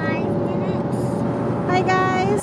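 Steady road and engine noise of a car driving on a freeway, with a voice heard briefly near the start and again near the end.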